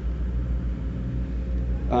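A steady low rumble with a faint hum under it. A man's voice starts at a microphone near the end.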